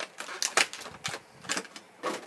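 Stiff plastic blister packaging giving a handful of irregular sharp clicks and crackles as a small plastic accessory is worked loose from its tray.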